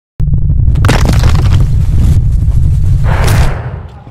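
Loud, choppy low rumble with crackles on the microphone, fading out near the end.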